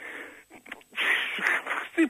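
A man breathing into a close microphone: a few faint mouth clicks, then a breathy rush of air lasting about a second.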